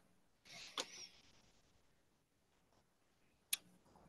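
Near silence broken by a few faint clicks: a soft rustle with a sharp click a little under a second in, and another single sharp click near the end.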